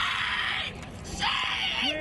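A person screaming "Shame!" over and over at full voice, in two long harsh screams a little over a second apart.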